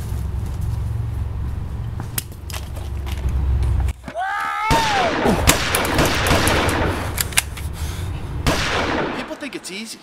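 A steady low rumble for about four seconds, then a short yell and a dense run of sharp cracks and bangs lasting about four seconds.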